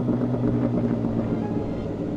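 2017 MV Agusta F4 RR's inline-four engine through an SC Project aftermarket exhaust, heard from the bike while riding. Its note is uneven rather than steady and eases off slightly toward the end.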